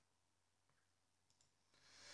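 Near silence: room tone, with a few very faint clicks.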